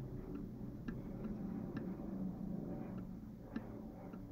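Stylus tip tapping and clicking on a drawing tablet during handwriting: about half a dozen light, irregularly spaced clicks over a faint low hum of room noise.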